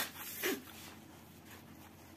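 A person blowing their nose: a long blow cuts off right at the start, a short second blow follows about half a second in, then faint room tone.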